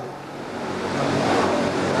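Crowd of listeners reacting all at once, a wash of many voices and noise that swells over the first second and a half.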